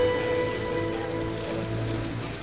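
Acoustic guitar notes held and ringing out, quieter than the playing around them, over a faint hiss.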